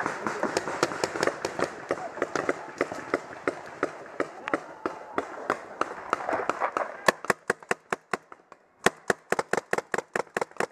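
Paintball markers firing in rapid strings of sharp pops, several shots a second. About seven seconds in the shots become louder and sharper, with a short break before a second fast string.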